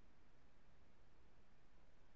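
Near silence: steady faint background hiss and hum, with no distinct sounds.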